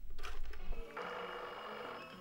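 Rotary telephone being dialled, with clicks of the dial, then from about a second in an old telephone's bell ringing with a rapid rattle.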